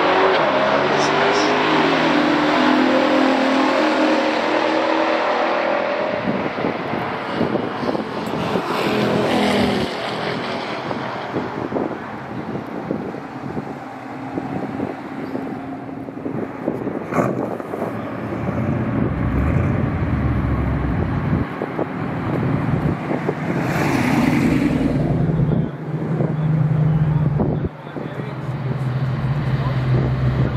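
A 1971 Chevelle SS454's 454 V8 and a 1969 Oldsmobile Cutlass's 350 V8 accelerating hard down a drag strip, their pitch rising for the first several seconds. Later a V8 idles steadily, with a short rev about two thirds of the way through.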